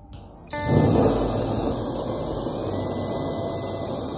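Handheld gas blowtorch lit about half a second in, loudest just after lighting, then burning with a steady rushing noise as its flame heats a threadless brass pipe fitting until it is hot enough to press into a PVC fitting.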